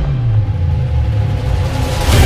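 Deep cinematic rumble from trailer sound design: a low tone slides down in pitch in the first half second, then holds as a steady bass drone while the music's higher parts drop away.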